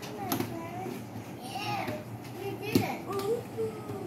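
A young child's voice making wordless sounds while a cardboard toy box is handled, with a couple of sharp knocks and a short scrape of cardboard.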